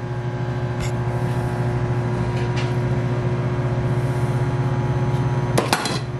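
Microwave oven running with a steady hum. Short knocks from a knife cutting into an avocado: one about a second in and a quick cluster near the end.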